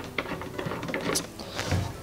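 A few faint clicks and knocks of plastic parts as a bolt is screwed tight onto a socket from inside a plastic water container.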